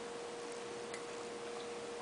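Quiet room tone: a faint steady hiss with a thin, steady hum held on one pitch.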